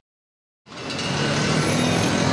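Silence for about half a second, then street traffic noise fades in and holds steady.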